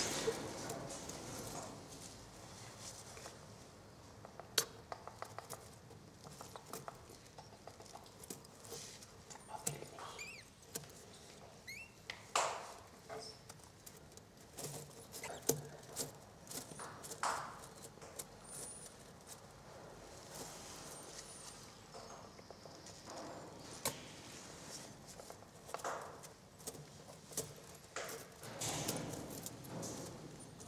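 Three-week-old umbrella cockatoo chicks in a nest box, giving a few short, raspy calls amid scattered clicks, taps and scratching as they shift about in the wood-shaving bedding.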